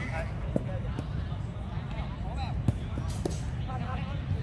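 A few sharp thuds of a football being kicked, the loudest about two and a half seconds in, over a low steady rumble and players' distant shouts.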